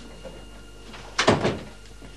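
A door thudding once, loudly and briefly, about a second in, as it is pushed open.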